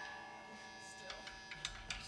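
A chord from an amplified instrument ringing out and slowly fading, with a few light clicks in the second half.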